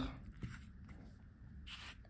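Faint handling noise from a watch case with its NH35 movement being turned over by bare fingers: a soft click about half a second in and a brief rub near the end.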